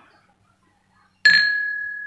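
Laboratory glassware clinking once, a glass funnel knocking against the conical flask or dish, about a second in, then ringing with one clear, slowly fading tone.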